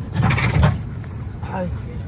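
Spare tyre being worked out of its underbody carrier beneath a pickup and set down on concrete: rubber scraping and a dull thump in the first half, then a short exclaimed "ay" near the end.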